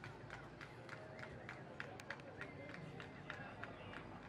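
A horse's hoofbeats as it canters on a sand arena after its last jump, over indistinct background chatter from spectators.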